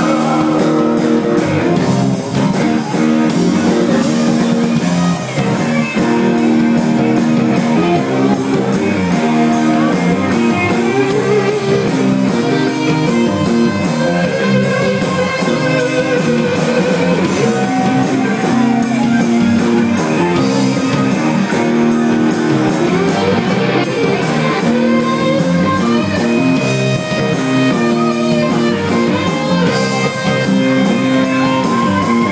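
Live rock band playing loudly: electric bass, electric guitar and drum kit, with a steady beat.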